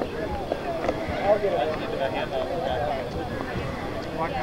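Indistinct chatter of several people talking at once, with overlapping voices and no clear words.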